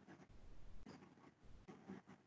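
Near silence with faint, irregular scratching and small clicks, like a pen writing on paper, coming through a video-call microphone.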